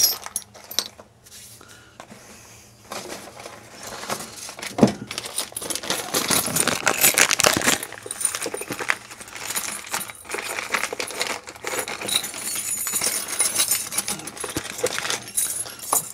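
Hands rummaging through a box of small steel parts in search of little tab washers, with irregular clinking and rattling of loose metal pieces. It is sparse at first and gets busy from about three seconds in, with one sharper clack soon after.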